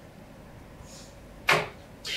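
Quiet room tone, then one brief, sharp handling noise about one and a half seconds in.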